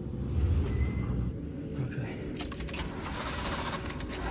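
Car keys jangling and clicking in the ignition over a low, steady rumble, in the second half in quick irregular rattles, as the driver tries to start a car that won't start.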